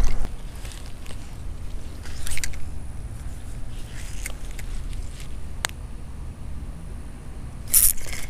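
Handling noise of a spinning rod and reel: scattered small clicks and scrapes over a low rumble, with one sharp click a little past the middle and a short loud rustle near the end.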